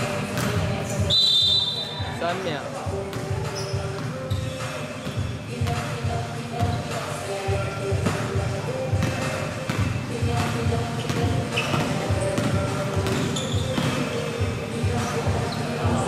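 Basketball bouncing repeatedly on an indoor gym court as players dribble, with a short high-pitched squeal about a second in and players' voices in the background.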